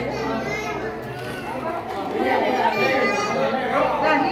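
Crowd of adults and children talking and calling out over one another: lively group chatter.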